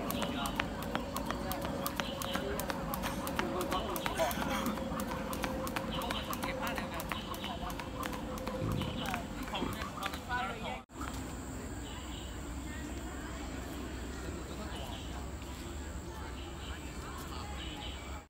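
A skipping rope slapping on a paved path as feet land, a fast run of light clicks. About eleven seconds in it cuts off and gives way to steady outdoor background with distant voices and a faint high, thin tone.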